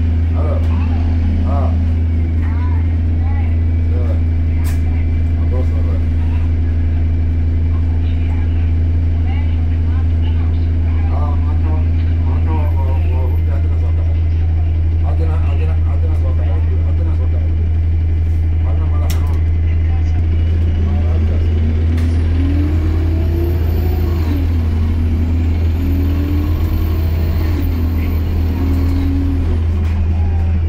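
Alexander Dennis Enviro200 MMC single-deck bus with a Voith automatic gearbox, heard from inside the passenger saloon: the engine runs steadily with a deep hum, under passengers' talk. In the last third a whine climbs and dips in pitch as the bus pulls away and changes gear.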